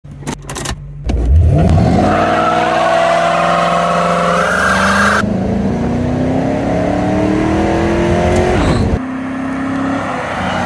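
Ford Crown Victoria's 4.6-litre V8 engine accelerating, its pitch climbing steadily for several seconds. Near the end it drops to a quieter, steady tone.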